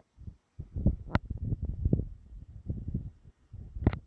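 Irregular muffled low thumps and rubbing from a phone camera worn on a chest harness, as the wearer moves and his body and clothing knock against it, with one sharp click about a second in.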